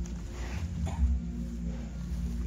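Large black bull giving two short breathy sounds, about half a second and about a second in, over a steady low rumble.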